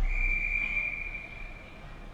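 Ice hockey referee's whistle: one long steady blast, strongest for about a second and then fading out, the signal that stops play.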